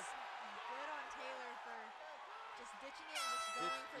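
A horn sounds once, a steady tone lasting under a second about three seconds in, signalling the end of the final round. It plays over shouting voices.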